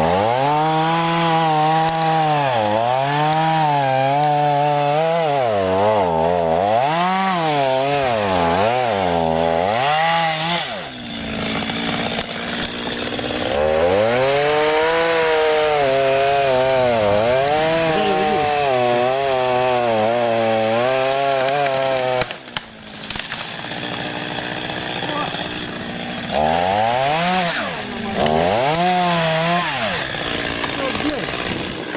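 Chainsaw cutting into tree trunks, its engine revving up and down under load in long pulls and falling back to idle between cuts. About two-thirds of the way through it cuts out for a moment, then idles before revving again near the end.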